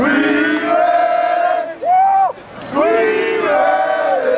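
A group of football players yelling together in unison: a long held shout, a short one that rises and falls about two seconds in, then another long shout.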